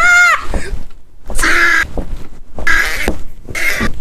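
A man's effortful vocal noises while forcing an overstuffed holdall shut: a short high-pitched squeal, then three harsh strained grunts about a second apart.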